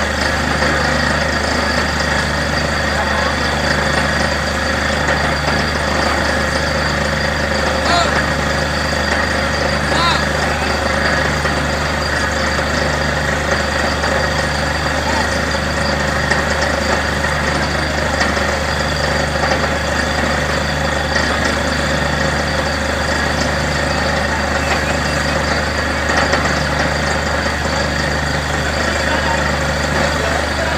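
Borewell drilling rig running steadily under load, a constant low engine hum with a tone that pulses on and off about every second and a half, while water and slurry gush out of the borehole.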